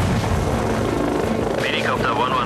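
Helicopter running, with a steady, dense rotor and engine noise, as a sound effect in a TV-series soundtrack.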